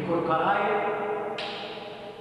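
A person's voice chanting one long held note that echoes in a stone tomb chamber, fading slowly toward the end.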